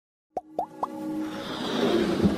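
Animated logo intro sting: three quick pops, each rising in pitch, about a quarter second apart, followed by a swelling whoosh over held musical tones that builds in loudness.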